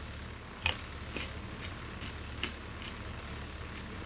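Faint clicks and crunches of someone chewing a raw baby carrot, with one sharper click a little under a second in, over a low steady hum.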